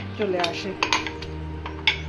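Wooden muddler pressing mint leaves and lime pieces against the bottom of a glass mug, giving a few sharp knocks of wood on glass, the loudest near the end. The muddling crushes out the lime juice and mint. A steady low hum runs underneath.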